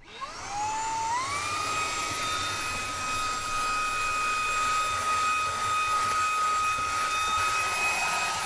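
Fanttik V10 Apex cordless handheld vacuum switched on: its motor spins up with a rising whine, climbs to a higher pitch about a second in, then runs at a steady high whine.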